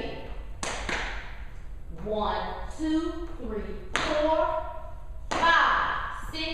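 Dance sneakers stepping, stomping and scuffing on a hard floor: a few separate thumps and scrapes, with a woman's voice between them.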